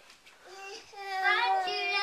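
A young child's high voice: a short sound about half a second in, then a long sing-song call held on one pitch for about a second near the end.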